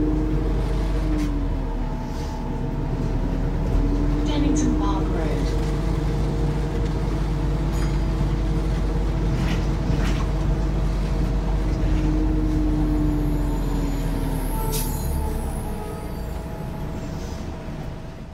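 Inside a Volvo B5LH hybrid double-decker bus on the move: a steady low drone from the drive and road, with a whine that glides up and down in pitch several times, and occasional rattles and clicks from the interior.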